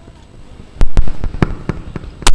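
A run of loud, sharp cracks in quick, uneven succession, starting a little under a second in.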